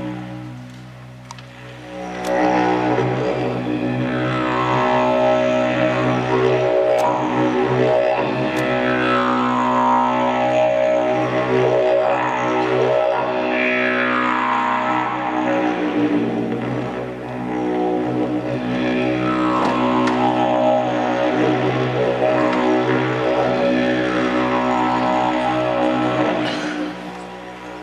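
Didgeridoo played as a steady low drone, its upper overtones sweeping downward again and again as the player shapes the sound. It is softer at first and swells up about two seconds in.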